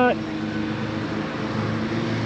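A steady, low motor hum under a constant rushing noise.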